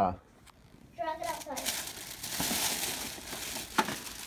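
Thin plastic shopping bag full of items crinkling and rustling as a hand grabs and handles it, with one sharp click near the end.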